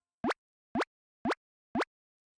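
Four quick cartoon 'pop' sound effects, evenly spaced about half a second apart, each a short blip that sweeps in pitch.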